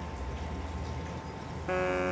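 A low, steady hum, then a held electronic chord of background music comes in near the end.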